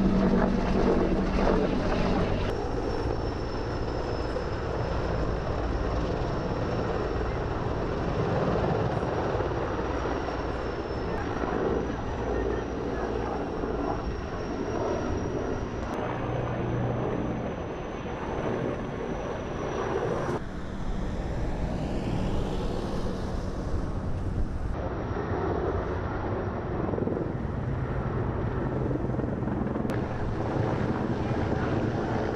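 Firefighting helicopter's engine and rotor running, heard continuously. The sound changes abruptly several times as the shots cut, and the pitch sweeps once about three-quarters of the way through, as a machine passing by does.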